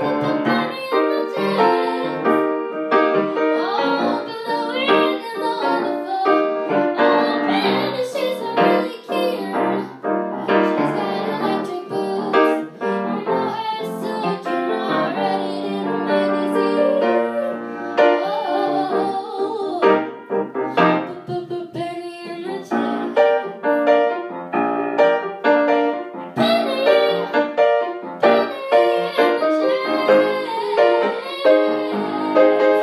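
Grand piano playing a jazz-funk arrangement of a pop song, chords struck in a steady rhythmic pattern.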